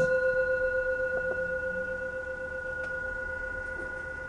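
Small hand-held Tibetan singing bowl, tuned to C5 at about 519 Hz, ringing on after being struck and slowly fading, its steady tone wavering regularly.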